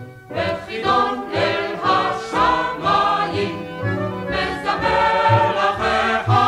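A vocal group singing a Hebrew song with instrumental accompaniment. The music comes in after a short gap right at the start.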